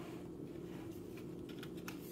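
Faint handling of cardboard packaging: light rustles and a few small clicks as the insert holding the switch is moved.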